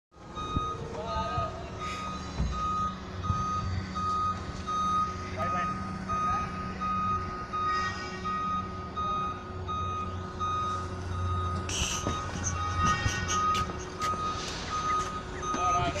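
Hyster forklift's reversing alarm beeping in a steady, even series of single-pitch beeps over the low running of its engine.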